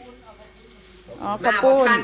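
A woman's voice speaking loudly, starting about a second in. Before that there is only faint background sound with a steady low hum.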